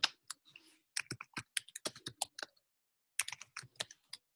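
Typing on a computer keyboard: quick runs of sharp keystrokes with a short pause just past the middle.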